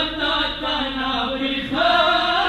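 Male voice chanting a Pashto noha, a Shia mourning lament, in long held and bending notes.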